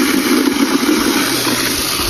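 Water running steadily from a pipe into a plastic bucket, a continuous splashing rush with a hollow, low-pitched body from the filling bucket.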